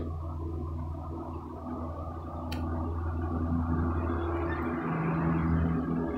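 A steady low hum with faint steady tones in it, swelling a little and easing near the end, and a single sharp click midway.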